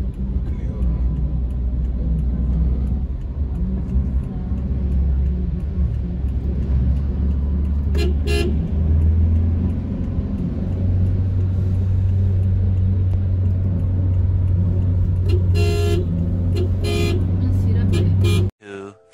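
Road noise inside a moving car's cabin: a steady low rumble from the engine and tyres that shifts up in pitch about ten seconds in as the car picks up speed. Short car-horn honks come once about eight seconds in and several times near the end.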